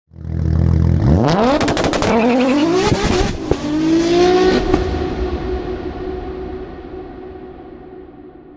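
Car engine with a low rumble for about a second, then revved hard several times in rising sweeps, with sharp cracks among the revs. The revs settle into one steady high note that slowly fades away.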